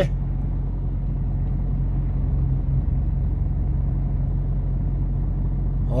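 A truck's diesel engine running at low revs, heard from inside the cab as a steady low drone.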